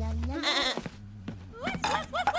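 A cartoon sheep's short bleat, about half a second in, followed near the end by light music with short rising-and-falling notes.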